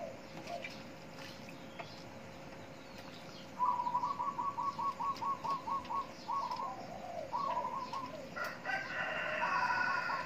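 Birds calling: a rapid run of short, evenly repeated chirps starting about three and a half seconds in, then a louder, longer call near the end that sounds like a rooster crowing. A faint steady hum sits underneath.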